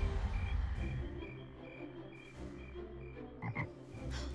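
Night ambience of frogs chirping in an evenly spaced rhythm, about three to four short high chirps a second, as the music fades out. A brief lower call comes near the end.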